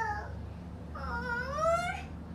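A toddler's high-pitched wordless vocalising: the tail of one short call right at the start, then a longer call in the second half that dips and then rises in pitch.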